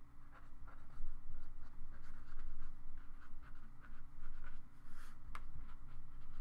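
Felt-tip marker writing on paper in a series of short, scratchy strokes.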